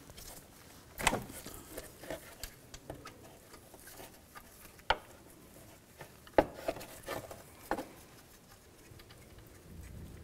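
A ratchet with a 6 mm hex bit backing a bracket bolt out of the engine, heard as a few scattered metal clicks and knocks. The loudest come about a second in and around six and a half seconds in, with fainter ticks between them.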